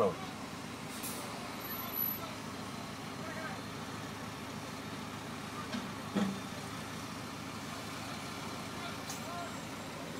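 A tram running, a steady rumble and hum, with a short hiss about a second in.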